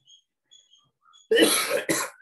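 A man coughing: a loud, harsh cough about a second and a half in, followed at once by a shorter second one.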